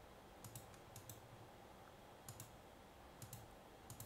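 Faint clicks of a computer mouse, a handful spread over a few seconds, several coming in quick pairs, over near-silent room tone.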